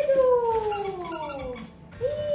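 Dachshund whining excitedly as a box holding a toy for it is opened: one long whine falling steadily in pitch, lasting nearly two seconds.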